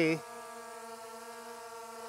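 Skydio 2 quadcopter hovering overhead: a steady, even propeller hum. It is holding a hover over its home point after return-to-home, because this drone does not land by itself.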